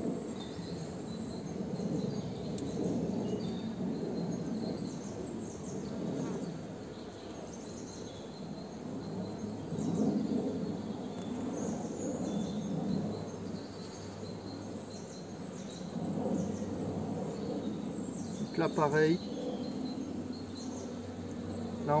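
Honeybee colony in an opened hive, buzzing in a steady hum that rises and falls a little as a bee-covered frame of comb is lifted out. The colony is calm.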